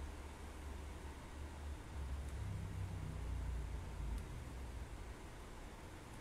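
Low, uneven rumble with a faint hiss, swelling a little in the middle, and two faint ticks.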